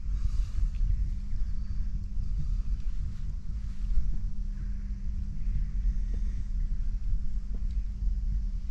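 Steady low rumble of wind and movement on the camera's microphone while a man wades through a shallow river in chest waders.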